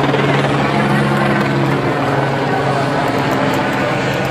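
Steady low drone of a helicopter hovering overhead, with crowd noise beneath it.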